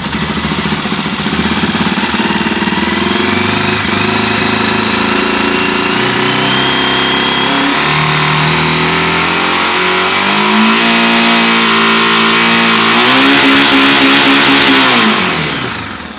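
Honda NX400i Falcon's single-cylinder engine revved up from idle, its pitch climbing in stages and held high, then falling quickly near the end as the throttle is let off. The engine is being revved to bring the stator's output up to about 80 volts.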